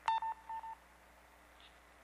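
Two short electronic beeps of the same pitch, each about a quarter second long and about half a second apart, over a faint steady low hum.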